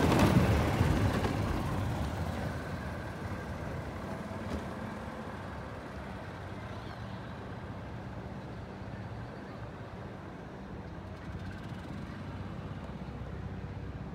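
Outdoor rumble: a loud rushing swell at the start that fades over about three seconds, then a steady low rumble.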